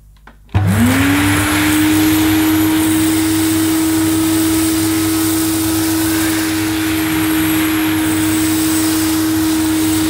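Electrolux 305 cylinder vacuum cleaner switched on about half a second in: its 700-watt motor whines up to speed within a second, then runs steadily with a loud rush of air.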